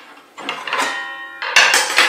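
Aluminium throat insert plate of a Metabo TS 254 table saw being opened and lifted out of the saw table: a metallic rattle with a brief ringing tone about a second in, then a louder metal scrape near the end.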